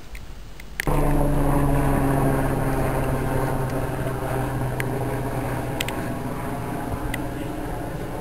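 Helicopter flying overhead: a steady, pitched engine and rotor drone that starts abruptly about a second in and slowly fades as it moves away.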